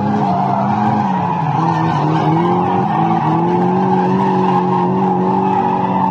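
BMW E36 3 Series cars drifting: engine held at high revs over a steady tyre squeal. The engine note sags about two seconds in and climbs back a little after three seconds.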